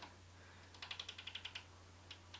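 Faint rapid clicking, a dozen or so light clicks a second for under a second near the middle, over a low steady hum.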